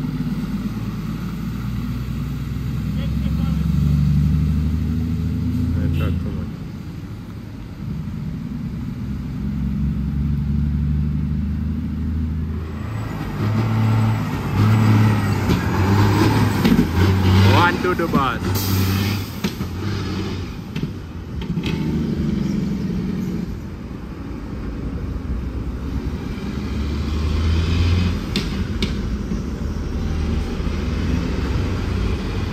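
Heavy diesel truck engines running at low speed as tractor-trailers work slowly round a tight bend, with a louder, busier stretch in the middle.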